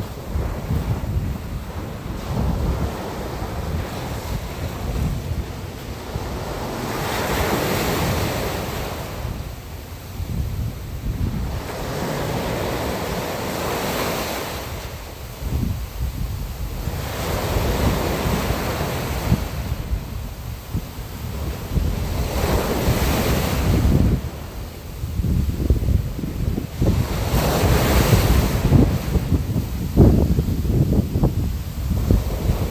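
Ocean waves washing in, a swell of surf about every five seconds, over a steady low rumble of wind.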